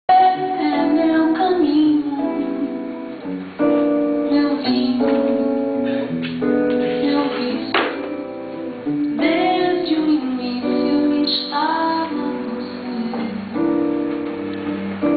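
A woman singing a slow bossa nova melody in long held phrases, accompanied by acoustic guitar, played live in a small room.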